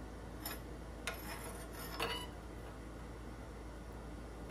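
Steel bar clinking and scraping against a steel twist jig held in a vise: a light click, a short scrape, then a sharper clink, over a steady low hum.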